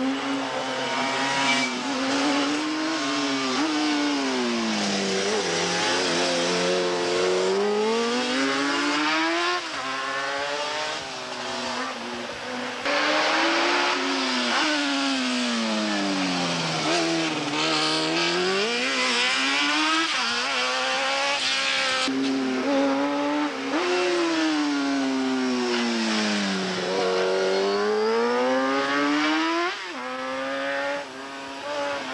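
Racing motorcycle engines revving hard through a run of bends, several bikes in turn. Each engine's pitch drops as the rider brakes and changes down for a corner, then climbs again as he accelerates out.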